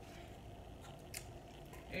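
A few faint, short clicks and crinkles as the cork and foil at the neck of a sparkling wine bottle are twisted by hand, the sharpest about a second in.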